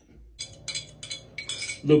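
A spoon stirring in a glass jar, clinking against the glass about six times in quick, irregular succession.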